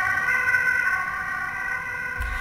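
Emergency vehicle sirens wailing, several held tones sounding at once, easing slightly after about a second.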